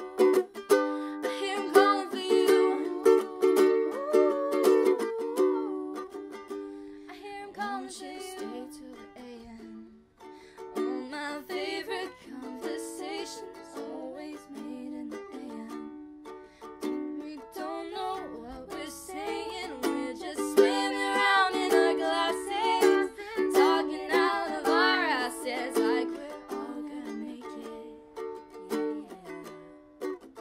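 Ukulele strummed in chords, with a woman singing over it in places; the playing thins out briefly about ten seconds in.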